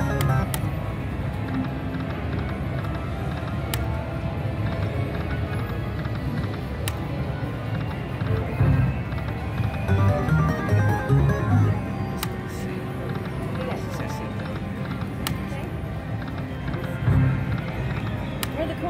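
Aristocrat Buffalo video slot machine playing its game music and reel sounds as spins run one after another, with a sharp click every three seconds or so, over casino background noise.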